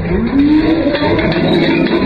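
Onlookers crying out in one long rising shout as a champagne bottle bursts while being sabered, over the hiss of champagne spraying out.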